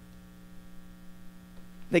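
Steady electrical hum from the sound system, a low held tone with fainter higher tones above it, during a pause in speech. A man's voice starts right at the end.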